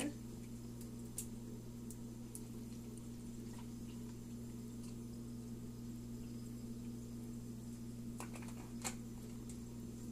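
Apple juice pouring from a large plastic jug into a plastic blender cup, faint, over a steady low electrical hum, with a couple of light clicks near the end.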